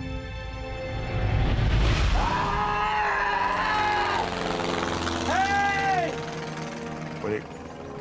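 Men shouting two long, drawn-out calls up toward the sky, over a dramatic music score; a rising whoosh swells just before the first call.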